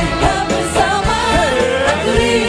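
Women singing a Malay pop song over a live band, with drums marking the beat under a gliding vocal melody.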